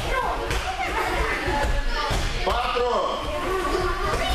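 Several voices talking at once, echoing in a large hall, with a few dull thuds of bodies landing on judo mats.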